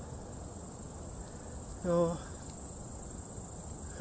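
Crickets chirping in one steady, high-pitched trill.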